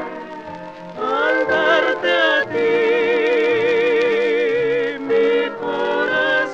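Female vocal duo singing in harmony with an orchestra, from a 1943 recording: the voices glide up about a second in and hold a long note with wide vibrato, with a brief break near the end.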